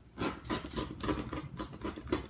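Rotary cutter blade rolling through several layers of thin upholstery fabric against a ruler on a cutting mat, in a quick run of short scratchy strokes.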